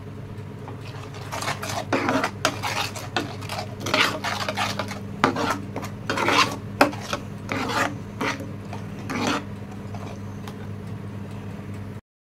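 Steel spoon stirring thick cashew-and-yogurt gravy and scraping across the pan in repeated strokes, from about a second in until near the end, over a steady low hum.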